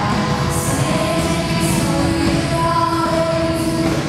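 Band music with singing: a pop-country band plays sustained chords under a held vocal line.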